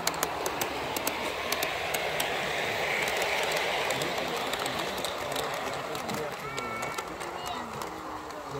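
Garden-scale model diesel locomotive and coaches rolling past on the track, wheels clicking sharply over the rail joints, louder about three seconds in and fading as the train draws away, with people talking in the background.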